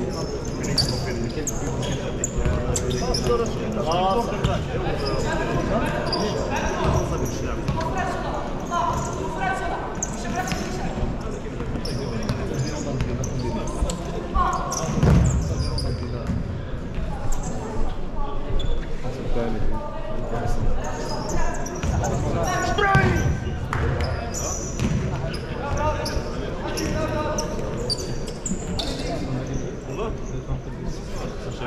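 Futsal match in a sports hall: the ball thudding on the court and off players' feet, with a harder thud about halfway through, under voices shouting and talking, all echoing in the hall.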